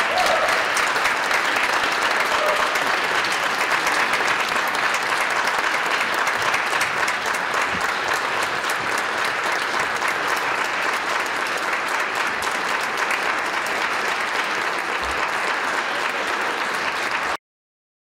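Audience applauding steadily, many hands clapping at once; the applause cuts off abruptly near the end.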